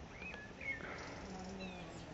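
Faint chirps of small birds, several short rising and falling calls, over a low background hum, with a brief click about a third of a second in.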